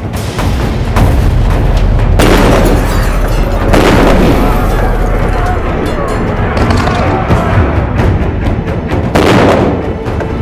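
Battle sound effects of explosions and gunfire over music, with a deep rumble throughout. Big blasts land about two seconds in, about four seconds in, and again near the end.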